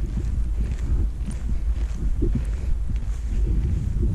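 Wind buffeting the microphone: a steady low rumble with irregular gusts.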